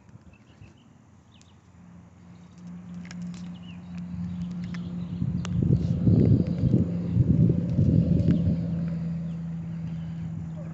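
Rough rumbling handling noise with a few sharp clicks and knocks as a hooked bluegill is worked out from under a rock and lifted out of the water. It is loudest in the second half, over a steady low hum that starts about two seconds in.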